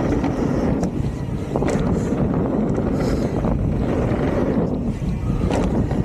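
Wind rushing over the camera microphone and tyres rumbling on hardpacked dirt as a Santa Cruz Megatower V2 mountain bike descends at speed. Several sharp knocks and rattles from the bike come as it goes over bumps.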